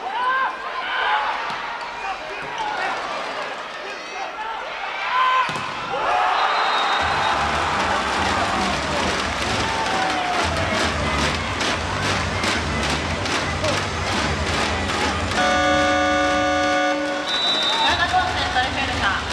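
Volleyball rally in an arena with crowd shouts, ended about five and a half seconds in by a hard hit of the ball, followed by a short referee's whistle. Then arena music with a steady bass beat plays over the crowd for the point won, and another short whistle sounds near the end.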